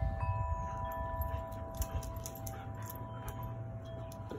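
Wind chimes ringing: several clear, long-held tones that start at different moments and ring on slowly, over a low rumble.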